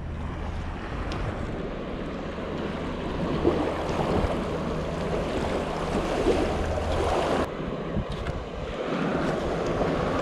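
Small surf washing at the shoreline, with wind on the microphone; a steady rush with no distinct events, its highest hiss thinning about seven and a half seconds in.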